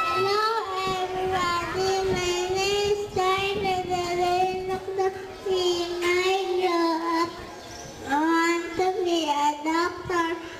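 A young girl singing solo into a microphone, holding long, slightly wavering notes, with a short pause between phrases around eight seconds in.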